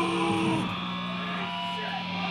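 Live band's electric guitar holding sustained, ringing notes, dropping to a lower held note about half a second in.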